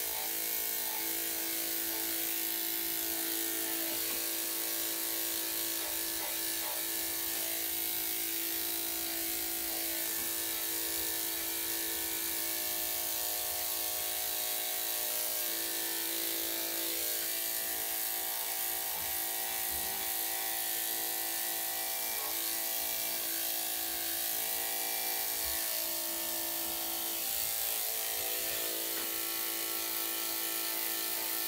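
Corded electric dog grooming clippers with a #7 blade running steadily, a constant motor hum as the blade works through a matted coat.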